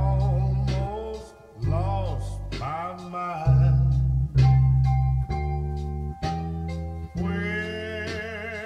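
Slow blues band music: an electric bass plays a line of long, full low notes, about one a second, under electric guitar string bends and a singing voice, with a rising held note near the end.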